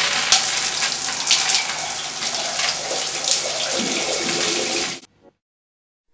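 Shower spraying water steadily onto a person and the tiles, cutting off suddenly about five seconds in.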